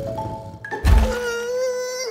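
Cartoon soundtrack: a few light mallet notes, then a heavy thud about a second in, followed by a long wavering groan held on one pitch from the animated polar bear.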